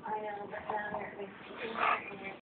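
Pugs making high-pitched play noises as they tug at a toy, with a louder, harsher cry near the end.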